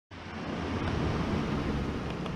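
Steady low rumble with a hiss of background noise, no distinct events.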